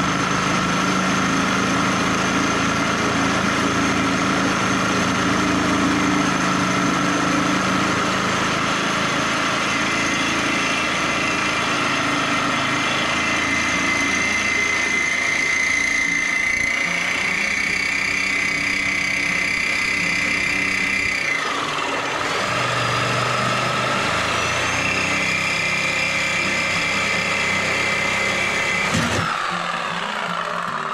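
Reciprocating saw running steadily as its blade cuts through a galvanized steel channel frame. The motor's pitch shifts with load about halfway through, drops and climbs back a little past two-thirds of the way, and changes abruptly near the end.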